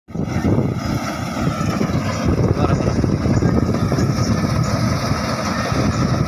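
Combine harvester engine running steadily, a dense low rumble with a faint steady whine above it, with voices talking over it.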